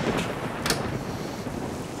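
Storm noise of steady rain and wind, with two sharp clicks about a quarter and three-quarters of a second in.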